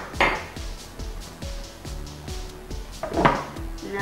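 Background music, with a metal spoon clattering down onto a kitchen countertop just after the start and another light knock about three seconds in.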